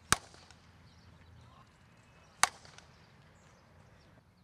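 A softball bat hitting front-tossed fastpitch softballs: two sharp cracks, one just after the start and one about two and a half seconds in.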